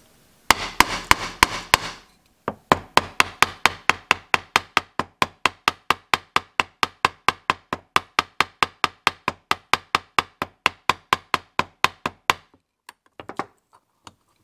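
Small ball-peen hammer tapping the brass pivot pin of a straight razor resting on a steel block, peening the pin over to hold the scales. A quick flurry of taps comes first, then a long, even run of sharp taps at about four or five a second, which stops about two seconds before the end.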